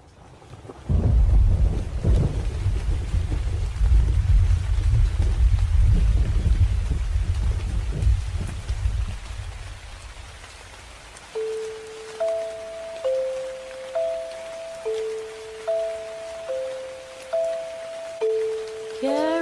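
Rain and thunder: a deep rolling rumble over a steady rain hiss, starting about a second in and fading out around ten seconds in. Then a slow lullaby melody begins, single soft notes about one a second, each dying away.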